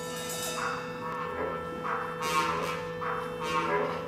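Symphonic band playing a held chord, with three bright swelling accents over it, about a second and a half apart.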